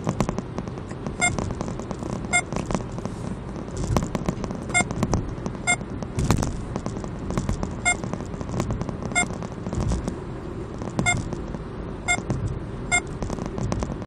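Radar detector giving short electronic beeps every second or two, warning of a K-band radar signal, over steady road noise inside the car.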